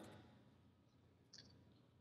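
Near silence in a pause between speech, with one faint, short click about a second and a half in.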